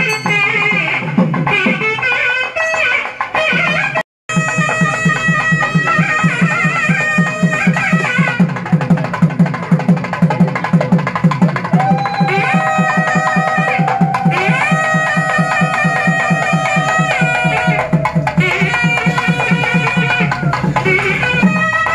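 Temple festival music: rapid, even drumbeats under a melody, with one long held note near the middle. The sound drops out for a moment about four seconds in.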